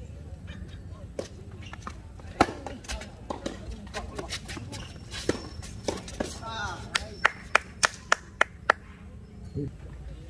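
Tennis rally on a hard court: racket strikes and ball bounces sound as sharp knocks, the loudest a little over two seconds in. Near the end comes a quick run of knocks at about three a second.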